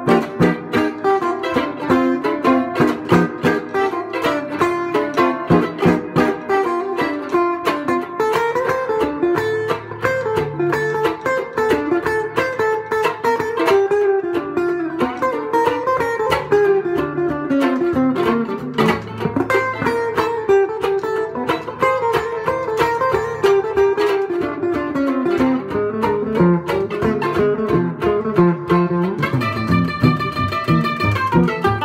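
A National resonator mandolin and an archtop guitar playing an instrumental jazz duet: a moving single-note melody over steady, evenly repeated chord strokes.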